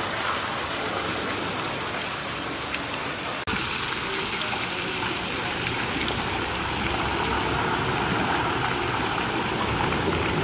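Steady rushing and splashing of a small outdoor fountain's water jets falling into a tiled pool. The sound breaks off briefly about a third of the way in and resumes with a little more low rumble.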